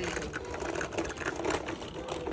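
Kick scooter's small wheels rolling over rough pavement: a fast, continuous rattle of small clicks.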